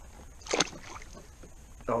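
A brief splash about half a second in as a released smallmouth bass goes back into the water.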